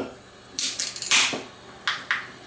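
A Modelo beer can being opened by its pull tab: a knock, then the crack of the tab and a sharp hiss of escaping carbonation about a second in, with another click near the end.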